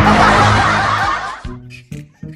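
Laughter mixed with background music: a loud burst of laughter that fades out about a second and a half in, then a few short music notes.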